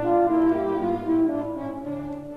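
Solo French horn playing a line of quick notes over a light orchestral accompaniment, the phrase easing off near the end, played back from a vinyl LP on a turntable.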